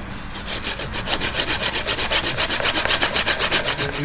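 Hand hacksaw cutting through a thick-walled steel tube in quick, even strokes.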